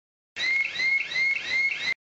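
An electronic alarm tone: a rising-then-falling chirp repeating about three times a second, starting suddenly and cut off abruptly after about a second and a half.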